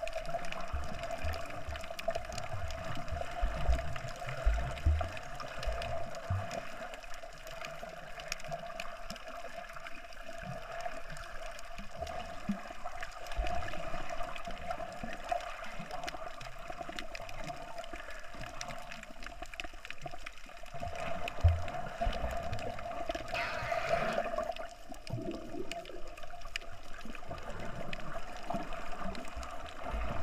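Underwater sound picked up by a submerged camera: muffled water movement with low thumps and gurgles over a steady hum, and a brief rush of noise about three-quarters of the way through.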